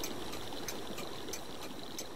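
Steady soft hiss of background ambience with a few faint, scattered ticks.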